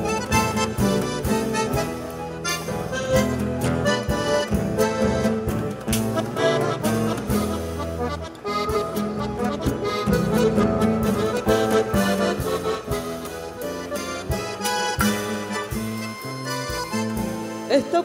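Instrumental chamamé played by a trio: accordion carrying the melody over guitarrón and a small drum kit, with frequent snare and cymbal strokes.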